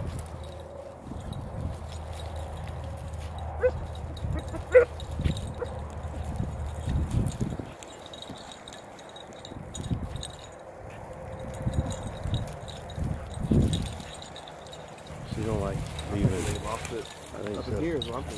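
Beagles giving tongue on a rabbit trail: a couple of short barks a second or so apart, then a longer wavering bay near the end, over low rumbling noise.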